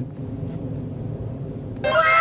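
Faint, even background noise. Near the end, a loud edited-in comedic sound effect begins: a single pitched tone with strong overtones, sliding downward.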